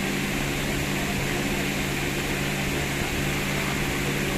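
Electric pedestal fans running: a steady drone with a constant low hum.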